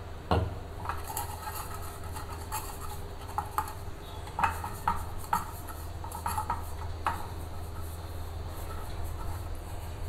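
A muffin tray being handled on a countertop: a string of light clinks and knocks as it is shifted and oil is wiped into its cups, over a steady low hum.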